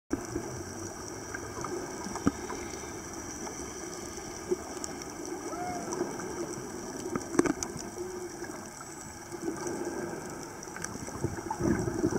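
Underwater ambience picked up by a camera in a waterproof housing: a steady, muffled wash of water noise with a few sharp clicks.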